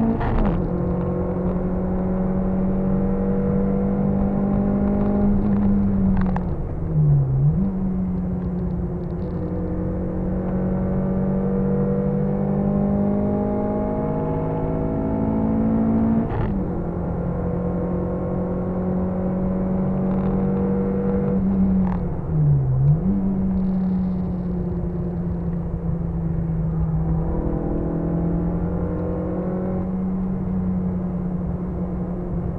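Car engine heard from inside the cabin, accelerating hard on a race track: its pitch climbs steadily in each gear, broken by quick gear changes about 6, 16 and 22 seconds in.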